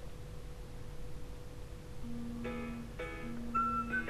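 A Huawei Mate S smartphone's speaker playing a short melodic jingle in answer to a 'where are you?' find-my-phone voice command. It starts about halfway in: a quick run of pitched notes over a held low note, with only faint room hum before it.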